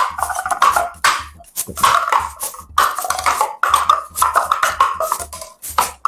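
Paper cups being pulled from nested stacks and set down on a table in quick succession: a rapid, uneven run of light taps and clicks with papery rubbing between them.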